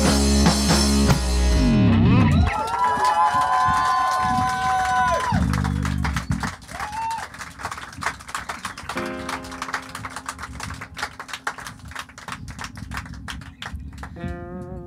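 Live band with electric guitar ending a song: the full band stops about two and a half seconds in, a last held note bends and dies away, then the audience claps, with a low sustained guitar note under the clapping near the end.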